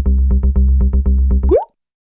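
Electronic logo sting: a loud, deep bass note under a fast, even pulsing beat, ending about a second and a half in with a quick rising sweep, then cutting off.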